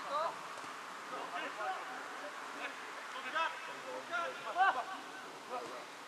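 Footballers' voices calling and shouting to each other during play, heard at a distance as short scattered calls over steady faint outdoor noise, the loudest near the end.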